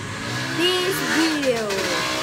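A boy's voice making wordless vocal noises that slide up and down in pitch.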